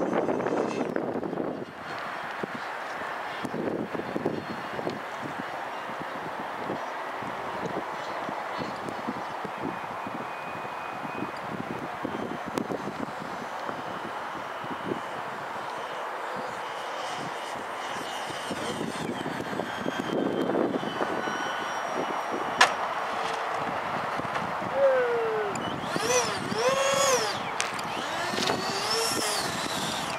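Electric ducted fans of an RC A-10 model jet running steadily as it flies in and lands, heard as an even rushing whine. One sharp click sounds about two-thirds of the way through.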